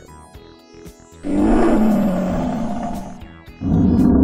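Background music, then a loud dinosaur roar sound effect that comes in about a second in and lasts about two seconds. A second loud, rumbling sound starts just before the end.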